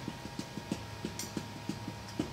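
Marker pen tip dabbing dots onto a whiteboard: quick, light taps at an even pace of about six or seven a second.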